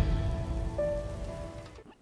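Fading tail of an intro logo sting: a hiss with a couple of held musical tones dying away over about two seconds.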